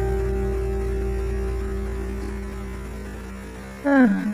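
Background music in an Indian classical style: a sustained low drone slowly fading, with a new sliding melodic phrase starting right at the end.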